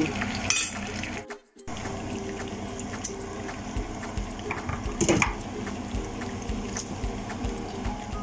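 Potato wedges frying in shallow oil in a pan: a steady sizzle with small crackling pops. A metal spatula knocks against the pan twice, once about half a second in and once about five seconds in. The sound cuts out briefly about a second and a half in.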